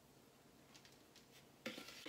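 Near silence, with a few faint soft ticks of a spoon scraping crumb topping out of a plastic bowl.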